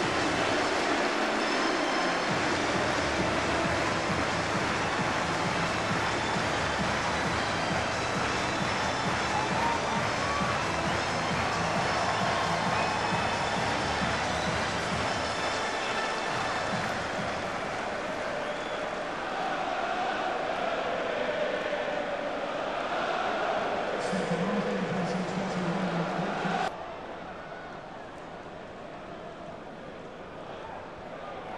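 Football stadium crowd cheering after a goal, a steady roar with some wavering singing voices in it. The roar cuts off suddenly about 27 seconds in, leaving a quieter crowd hum.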